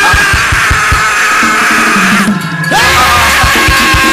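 Loud praise music with a drum kit keeping a fast, steady beat and long held high notes over it. The music dips briefly a little after two seconds in.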